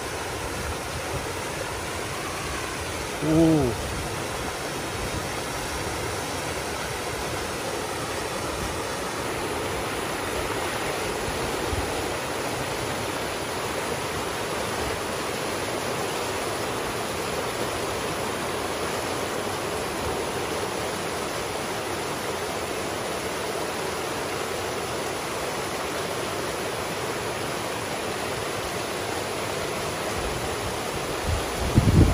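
Pond water rushing steadily through a breach in a beaver dam of sticks and mud, pouring down into the channel below as the dam gives way under the water's pressure.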